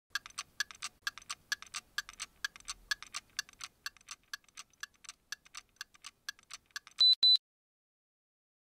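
Mechanical watch movement ticking, a quick even tick-tock of about four ticks a second that slowly fades away. It is followed by two short, loud beeps near the end.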